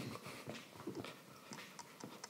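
Faint footsteps and light irregular knocks on a hard floor, as a person walks across and handles a chair.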